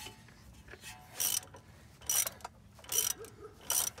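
Hand ratchet clicking in four short bursts, about one a second, as an 18 mm socket turns the nut on a Jeep Gladiator's front sway bar end link.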